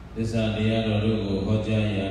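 A man's voice chanting in a Buddhist recitation, starting just after the beginning and holding one long, steady note.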